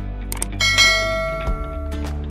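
A notification-bell sound effect from a subscribe-button animation rings once, starting about half a second in and dying away over about a second and a half, just after a short click of the cursor on the bell icon.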